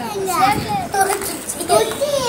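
A young child talking in a high voice, several short phrases one after another.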